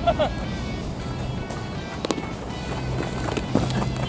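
Background music over outdoor field ambience, broken by one sharp crack about two seconds in: a bat hitting a ball during infield fielding practice.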